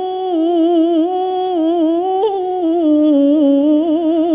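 A woman reciting the Quran in melodic tilawah into a handheld microphone: one long held note with wavering ornaments, stepping down to a lower pitch about two and a half seconds in.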